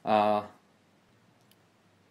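A man's voice for about half a second, then a pause of near silence with one faint click about one and a half seconds in.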